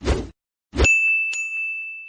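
Outro transition sound effect: a short whoosh, then a bright ding struck twice that rings on as one high tone and fades away.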